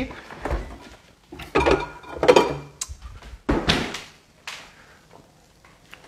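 Kitchen cupboards and dishes being handled out of view in a few short separate bursts while a glass of water is fetched.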